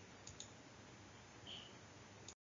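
Near silence: faint room tone with two faint clicks in quick succession about a third of a second in, and a brief faint high sound around a second and a half in.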